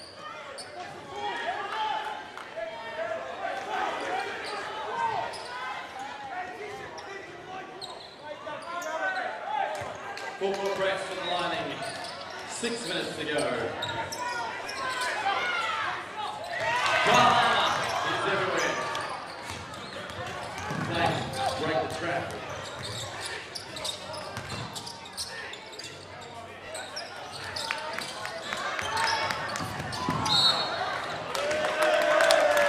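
Live basketball game in an echoing gym: a ball bouncing on the hardwood court among players' and spectators' voices, with a louder burst of shouting about 17 seconds in.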